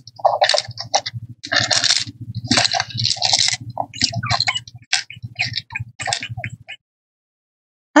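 Paper and craft materials handled on a tabletop: irregular rustling with light clicks and taps as hands press and work a paper tag. The sounds stop a little before the end.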